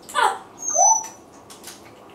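Congo African grey parrot calling: a quick falling note a moment in, then a short, lower curved note with a thin high whistle over it just before the one-second mark.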